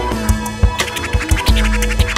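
Hip hop track with a vinyl record scratched back and forth on a turntable over a drum beat and heavy bass.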